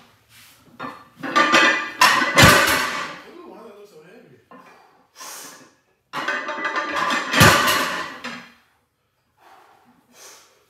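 A plate-loaded barbell is lifted from the floor and set down on the rubber-matted platform twice, about five seconds apart. Each rep carries a loud grunt or strained exhale from the lifter and ends in a heavy thud of the plates landing.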